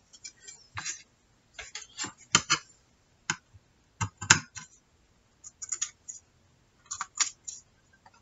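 Scissors trimming the paper edge of a collaged journal cover: a string of short snips at an uneven pace.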